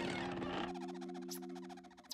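Cartoon sound effect: a brief hiss, then a fast croaking rattle, over a held chord of low musical notes.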